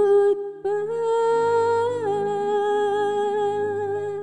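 A woman singing solo into a microphone, with a short held note, a brief break, then one long sustained note that lifts slightly and settles back down. A soft backing track of sustained chords plays beneath her. She is singing while sick with flu and a mild cough.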